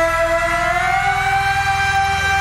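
A male pop singer holds one long high note, loud and unbroken, that rises slightly about halfway, over a low pulsing beat from the backing track.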